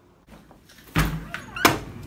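A door being pushed open, with two sharp knocks about two-thirds of a second apart, the second the louder, as the latch and door hit.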